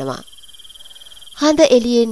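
Crickets chirping in a steady, high, pulsing trill. It carries on under a voice and is heard alone for about a second when the voice pauses.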